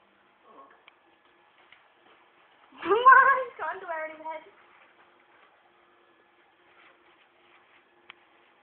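A woman's high-pitched, wordless vocal exclamation, like cooing at a pet, about three seconds in. It lasts about a second and a half, wavering at first and then sliding down in pitch.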